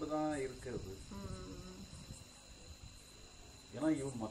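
A voice speaking at the start and again just before the end, with a quieter pause between; a steady, faint, high-pitched whine runs underneath throughout.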